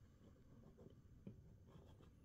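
Near silence with a few faint, light handling noises: a hand shifting a small plastic action figure on its clear plastic display stand.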